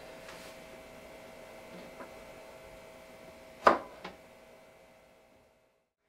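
A few light knocks from broccoli and a knife being handled on a cutting board and a plastic dehydrator tray; the sharpest knock comes a little past halfway, with a smaller one just after. They sit over a faint steady room hum, and the sound fades out near the end.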